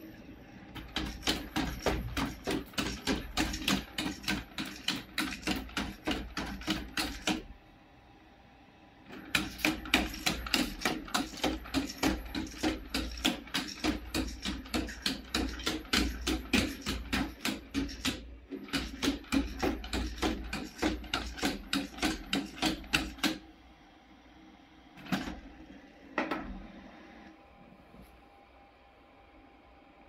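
Xiaomi CyberDog 2 quadruped robot walking on a tile floor: its feet tap rapidly and evenly, several taps a second, in three long runs with short pauses, over a low hum. Near the end come two single knocks as it lowers itself to lie down.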